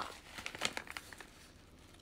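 A small foil sachet crinkling as it is handled, a run of sharp irregular crackles in the first second or so that then thins out.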